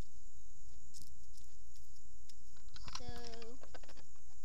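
Handling noise from a handheld camera: fingers shifting and clicking against the body near the microphone over a low rumble. A short, steady hummed voice sound comes in about three seconds in.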